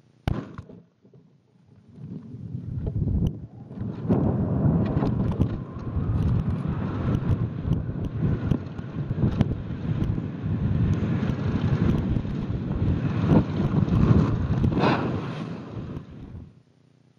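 Rushing wind noise and rattling on the onboard camera microphone of a high-altitude balloon payload. After a single sharp click near the start, it builds up about two seconds in and runs on with many small clicks and knocks through it.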